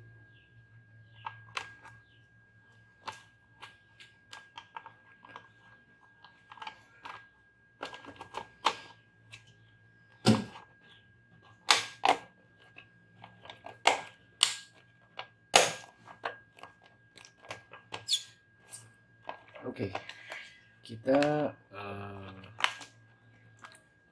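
Sharp, irregular plastic clicks and snaps as the clear lens cover and clips of a Toyota Fortuner instrument cluster are handled, the loudest snaps coming in the middle.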